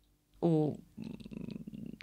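A woman's voice: one short word, then a drawn-out, low, creaky hesitation sound lasting about a second as she searches for her next words.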